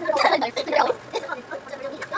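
Indistinct, garbled voices coming from a television's speaker and picked up by a camera across the room, in short uneven bursts.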